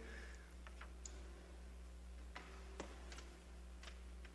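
About half a dozen faint, scattered clicks over a low, steady hum in a quiet room.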